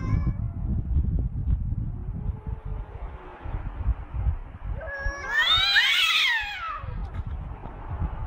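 Cats yowling at each other in a standoff: a faint low drawn-out yowl a couple of seconds in, then about five seconds in a loud caterwaul that rises and falls in pitch for under two seconds. A low rumbling noise runs underneath.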